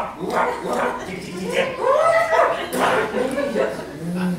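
A person's wordless, dog-like whimpering and yipping vocal sounds, the pitch sliding up and down, with a longer wavering whine around the middle.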